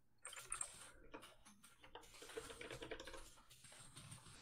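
Faint, fast typing on a computer keyboard: a run of irregular key clicks.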